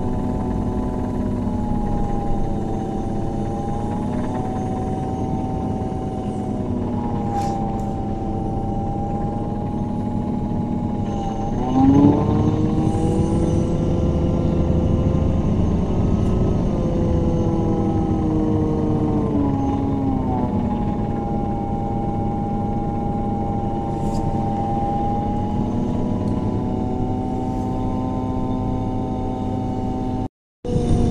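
A MAN Lion's City CNG bus's six-cylinder natural-gas engine and ZF Ecolife automatic gearbox, heard from on board as a whine over a low road rumble, its pitch rising and falling as the bus accelerates, changes gear and slows. The sharpest rise in pitch and loudness comes about twelve seconds in, followed by a slow fall a few seconds later, with a couple of brief rattling clicks.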